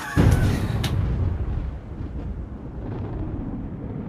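A deep boom sound effect hits just after the start. Its crackle fades within about a second, leaving a low rumble that slowly dies away.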